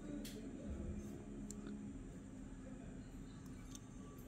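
Quiet room with a few faint light clicks and taps from fingers turning a small metal die-cast model car.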